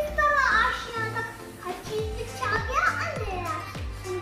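A young boy reciting an Urdu poem in a sing-song chant, his voice gliding and drawing out the lines, over background music with a regular low beat.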